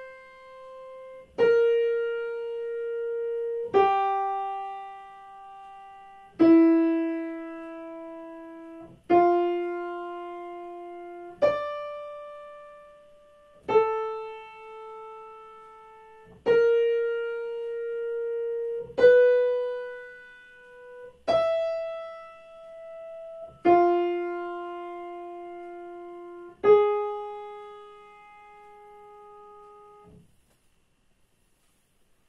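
Digital piano playing a slow single-line melody of twelve notes in F major, one note struck about every two and a half seconds and left to ring and fade: a melodic dictation for ear training.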